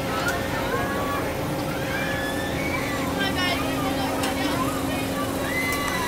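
Carnival thrill ride running, its machinery giving a steady low hum, with riders' shouts and screams rising and falling over the crowd noise of the fairground.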